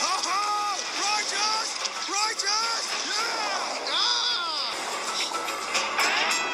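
Animated film soundtrack: cartoon voices crying out in short rising-and-falling yells, over music and rushing water.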